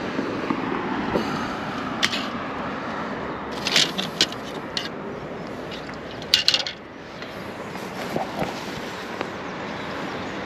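Metal rods of an old TV aerial clinking and scraping as it is handled, with a few sharp clicks and knocks in small clusters, the loudest burst near the middle, over a steady outdoor background hiss.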